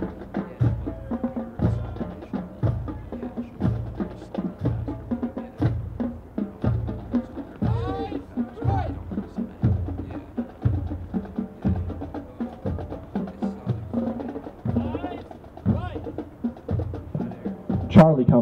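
Military band playing a march for cadets in review, carried by a steady bass-drum beat.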